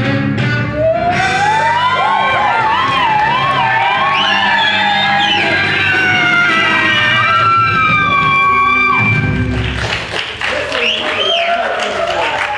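Live rock music with electric guitar: a long, wavering lead line with pitch bends over low sustained chords, breaking off about nine seconds in. It gives way to shouting and laughter.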